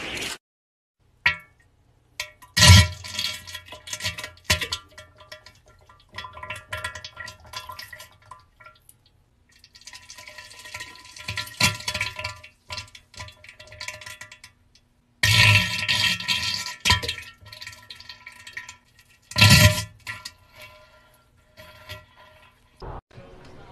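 Electric guitar, a red Flying V-style, played loud and distorted in several bursts with short silences between them.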